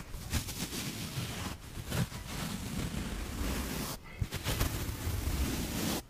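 Dry sponges squeezed and rubbed in the fingers close to the microphone: a continuous scratchy rustle with short breaks about a second and a half in and near four seconds.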